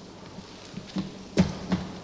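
A few short, soft knocks and thuds. The loudest comes about a second and a half in.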